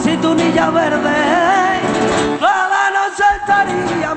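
Flamenco guitar played with a wavering, ornamented vocal line. About two and a half seconds in, the low guitar notes drop away and the voice slides up into a long held note with vibrato.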